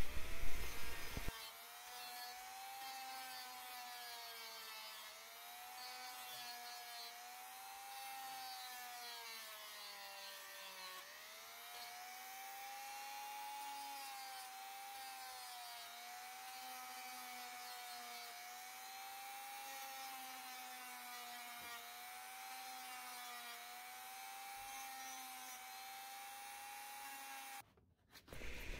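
Dremel rotary tool with a sanding drum running at high speed against the edge of a plastic pickguard, a steady whine that sags in pitch now and then as it is pressed into the bevel, most deeply about eleven seconds in. It cuts off suddenly just before the end.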